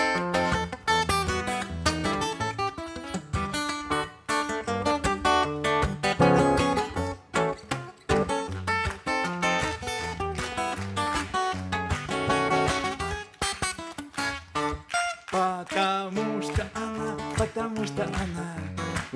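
Acoustic guitar played solo in an instrumental break of a song: a busy, rhythmic run of picked and strummed notes.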